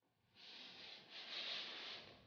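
Faint brushing scrape of a satin pointe shoe sliding across a wooden floor as the pointed foot is drawn in, in two soft swells with no taps.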